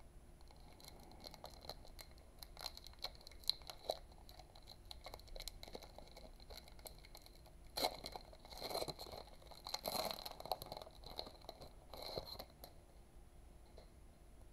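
Foil booster-pack wrapper crinkling softly in the hands, then torn open, with louder bursts of crinkling and tearing from about eight seconds in that stop shortly before the end.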